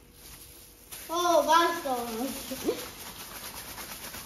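A high-pitched voice making drawn-out, wordless sounds that bend up and down in pitch, starting about a second in after a quiet moment.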